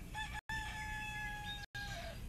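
Rooster crowing: a few short opening notes, then one long, slightly falling call that drops off at the end. The sound is broken by two brief dropouts in the audio.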